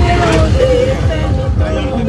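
A vehicle's steady low rumble, with voices over it.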